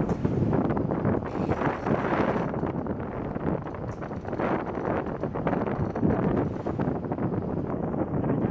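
Wind buffeting the microphone: a continuous rushing noise that rises and falls in gusts, with crackles through it.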